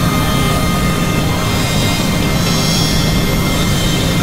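Dense experimental electronic drone and noise music: many sustained tones held over a steady low rumble, with a jet-like hiss swelling in the highs partway through.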